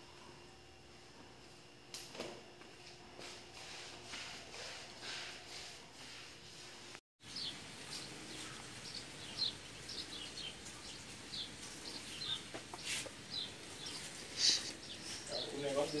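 Low room tone for the first few seconds. After a cut, small birds chirp over and over in short, high, falling calls, somewhere near a rural porch.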